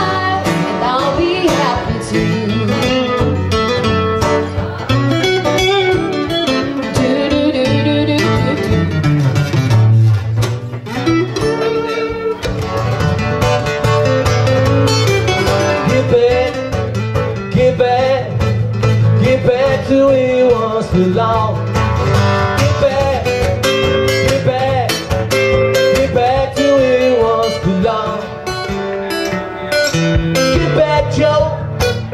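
Steel-string acoustic guitar played as an instrumental break, with quick picked melody notes over strummed chords at a steady pace.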